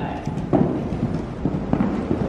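Palomino horse cantering on arena sand over a small jump, its hooves landing as a few dull thuds, one about half a second in and several more close together near the end.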